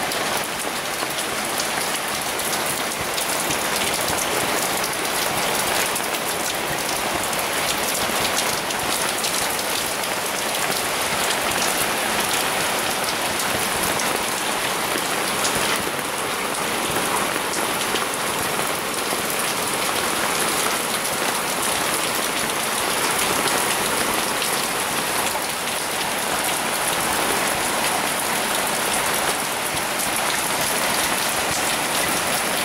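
Heavy rain pouring steadily onto flat rooftops and a terrace, a dense, even hiss of drops splashing on hard surfaces.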